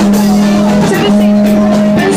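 Live rap-funk band music, loud, dominated by two long steady held notes at the same low-middle pitch, the second starting about a second in.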